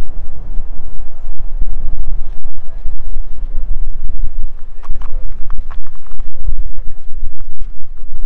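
Strong wind buffeting the camera's microphone on an exposed clifftop: a loud, gusty low rumble that surges and drops throughout.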